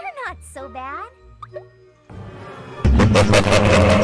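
Cartoon soundtrack: a pitched voice or sound effect sliding down and up in pitch during the first second. About three seconds in it gives way to loud cartoon voices and music, with a man laughing.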